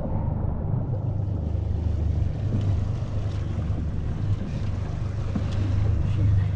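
Steady low rumble of a boat at sea, with the twin outboard motors idling under wind and water noise and a few faint clicks.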